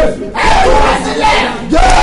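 A man's voice shouting loudly in fervent prayer, with a short break just after the start.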